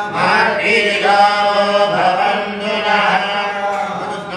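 A voice chanting Sanskrit abhishekam mantras in a drawn-out, melodic recitation, with held notes that slowly rise and fall. This is the chant that goes with the offerings poured over the lingam.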